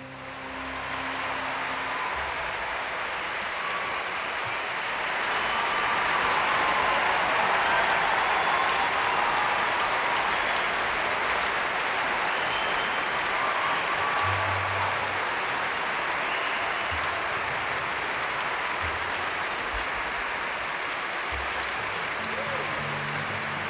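Large audience applauding after a musical performance, the clapping swelling to its loudest a few seconds in and holding steady. The last notes of the music die away in the first couple of seconds.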